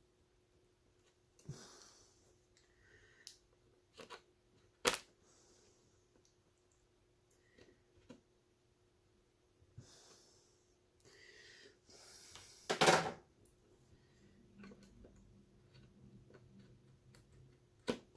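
Faint, scattered clicks and scrapes of a knife blade cutting into the plastic end of a PCIe x1 slot on a motherboard, with a louder rasp about thirteen seconds in.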